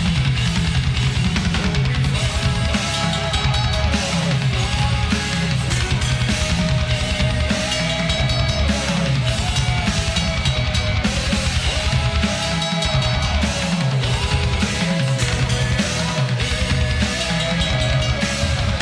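Heavy metal music with a drum kit played fast and tight, rapid bass drum strokes driving under distorted guitars.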